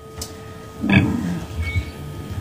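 A short lull in amplified guitar playing: faint steady hum from the amp or PA, with one low note or thump about a second in that rings briefly and fades.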